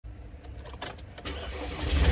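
A few sharp clicks as the ignition of a 2016 Ford Transit's 2.2 turbo diesel is switched on, then the starter cranks the engine, getting louder near the end as it begins to fire.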